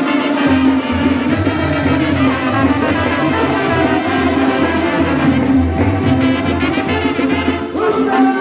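Brass band music playing loudly, with trumpets and trombones over a steady bass line; the music changes just before the end.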